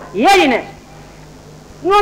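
A single short exclamation from a human voice, its pitch rising then falling, over the low steady hum of an old recording; speech starts again near the end.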